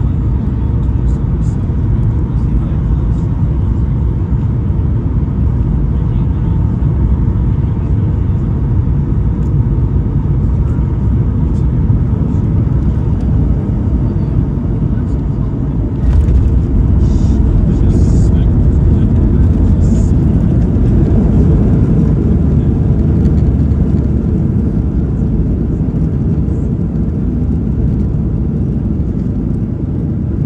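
Cabin noise of a Boeing 737 MAX 8 with CFM LEAP-1B engines landing, heard from a window seat: a steady loud rumble of airflow and engines on short final. About halfway through it gets louder, with a few sharp knocks, as the wheels touch down and the jet rolls out on the runway.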